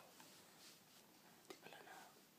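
Near silence: faint room tone with a soft breathy rustle and a small click about one and a half seconds in.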